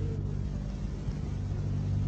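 A pause in the speech that holds only the recording's own background: a steady low hum with a light hiss.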